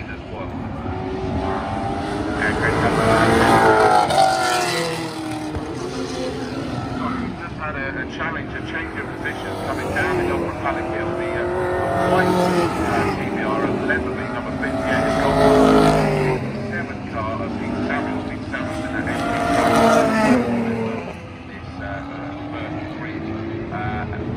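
V8 race cars running past one after another, their engine notes rising and falling as each one accelerates through the bend and goes by, with the sound swelling to a peak several times.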